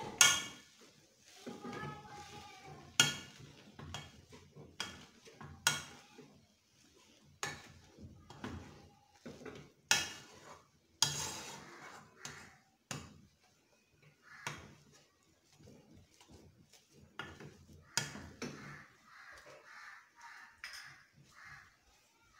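Metal potato masher mashing boiled potatoes in a pot, knocking against the pot's bottom and sides in irregular strokes every second or two, the loudest right at the start.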